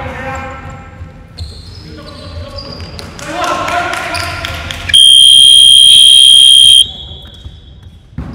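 Electronic game-clock buzzer sounds one loud, steady high tone for just under two seconds, about five seconds in, marking the end of the quarter. Before it, players shout and a basketball bounces on the hardwood court.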